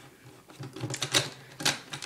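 Hard plastic toy creature figure being handled, its parts clicking and knocking: a few sharp clicks in the second half.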